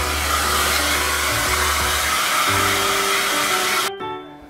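Handheld hair dryer blowing steadily while drying a miniature schnauzer's legs; it cuts off suddenly near the end.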